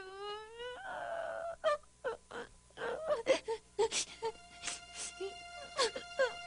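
A girl's voice crying: a drawn-out wail that breaks off about a second in, then short, broken sobs and gasps. A steady held tone comes in about four seconds in.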